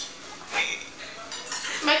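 A metal fork clinking and scraping on a plate a few times during eating.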